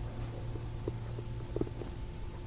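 Steady low hum of background recording noise, with a few faint soft ticks in the second half.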